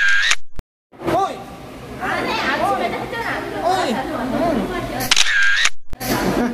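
A camera-shutter sound effect heard twice, at the start and again about five seconds in, each followed by a moment of complete silence. Between them, voices are talking.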